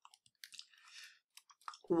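A few faint, short clicks scattered through the pause, with a brief soft rustling noise about a second in, close to the microphone.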